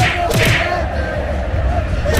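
Stadium crowd chanting a football song, with a few sharp percussive beats in the first half-second.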